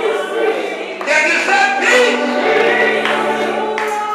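Several voices singing gospel music together in a church, over a steady low held accompaniment note; a deeper held note joins about halfway through.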